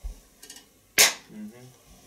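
A single sharp hand clap about a second in, the sync clap that marks the start of a take for the cameras.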